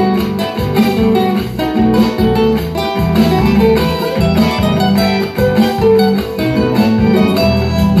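Instrumental interlude of a chacarera between sung verses, with plucked acoustic guitar leading the accompaniment.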